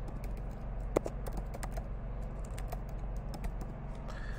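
Keys being typed on a computer keyboard: a quick, irregular run of clicks, with one sharper click about a second in, over a steady low hum.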